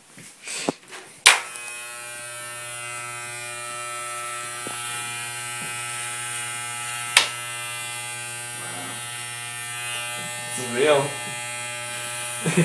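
Electric hair clippers fitted with a number-four comb guard switch on about a second in, then run with a steady buzz while cutting hair. A sharp click comes about seven seconds in.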